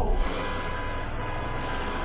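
Steady wash of busy highway traffic noise, many cars passing together, cutting in suddenly at the start.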